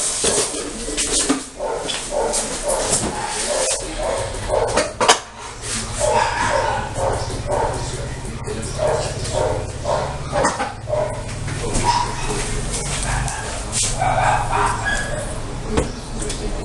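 A dog barking and yipping in short repeated calls, over a steady low hum that starts about four seconds in.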